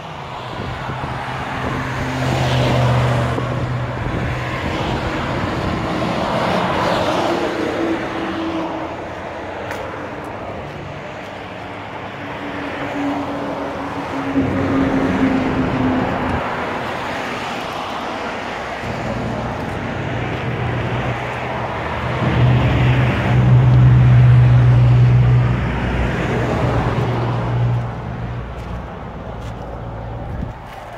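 Motor vehicle traffic going by, with a low engine hum that grows loudest about three-quarters of the way through.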